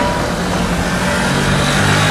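A car driving past close by, its engine and tyre noise growing louder near the end.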